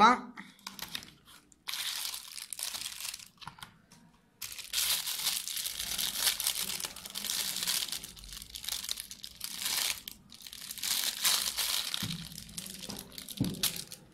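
Clear plastic packaging bag crinkling and rustling as it is handled and pulled off a pedometer wristband, in several long stretches with short pauses between.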